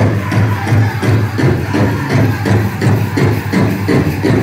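Powwow drum group singing over a big hand drum struck in a steady, even beat of about three beats a second, the song for a women's jingle dress dance. The metal cones of the dancers' jingle dresses rattle with the beat.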